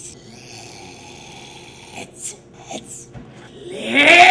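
Quiet room tone with a few short, soft breathy noises. Just before the end a man's voice rises in pitch into a loud cry.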